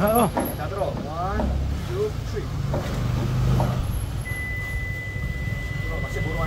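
Voices talking and exclaiming briefly over a continuous low rumble. A steady high-pitched tone starts about four seconds in.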